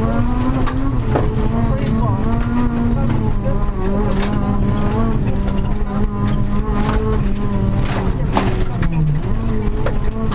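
Honda Civic rally car's engine running hard at speed, heard from inside the cabin. Its pitch wavers with throttle, and the revs drop briefly about nine seconds in before picking up again. Sharp knocks sound now and then.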